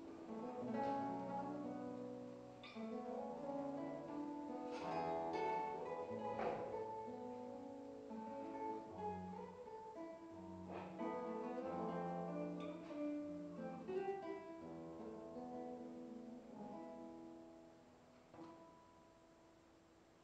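Solo classical guitar played fingerstyle: single plucked notes and chords ringing into one another. Near the end the playing thins and the last note fades away as the piece closes.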